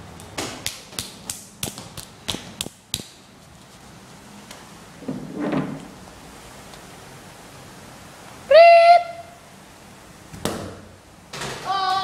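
A quick run of sharp slaps, about four a second, like bare feet running on a tiled floor. About eight seconds in comes a short, very loud, high shout from a child, then a single sharp knock. A voice starts holding a sung note near the end.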